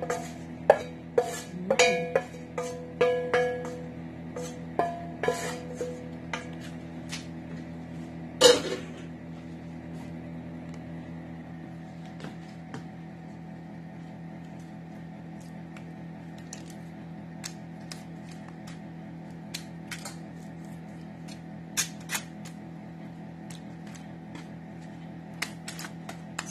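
A metal utensil clinking and scraping against a metal pan while garlic butter is spooned out, a quick run of clinks with a short ring to them for the first nine seconds, the loudest about eight seconds in, then only a few scattered taps. Steady background music runs underneath.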